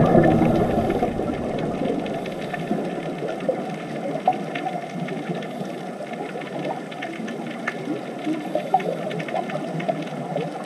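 Underwater ambience: a steady crackle of small clicks and pops with a few brief squeaky tones. A deep rushing sound fades away over the first two seconds.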